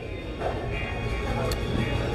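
Restaurant background: faint chatter of other diners and music over a steady low hum.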